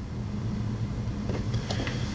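A pause in speech: a steady low hum with a faint rumble of room background.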